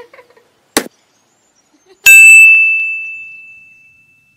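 Subscribe-button animation sound effects: a short click about a second in, then a loud notification-bell ding about two seconds in, one high ringing tone that fades away over about two seconds.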